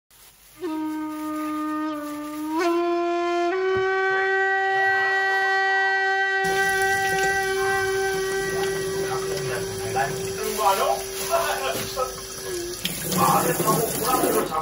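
A held horn-like note that steps up in pitch twice in the first few seconds, then holds steady until about 12 seconds in. From about halfway, a kitchen tap runs into a stainless-steel sink, splashing over an onion washed under it.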